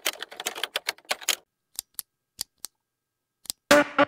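Typing sound effect: a quick run of keystroke clicks for about a second and a half, then a few scattered single clicks. Near the end a loud outro music sting begins.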